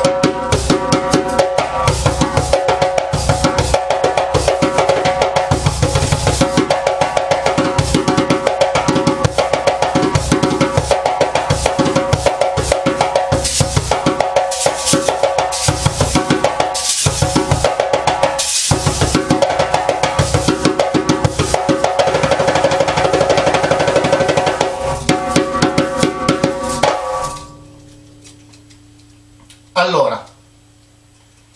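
Djembe played by hand in a fast, continuous rhythm, with kessing-kessing metal rattles on the drum buzzing on each stroke to add extra vibration to the tone. The playing stops suddenly about 27 seconds in.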